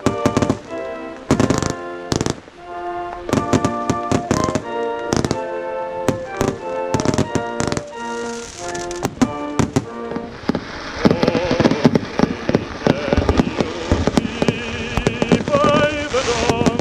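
Music with held notes plays over repeated firework bangs and pops. From about ten seconds in, dense crackling from the fireworks takes over.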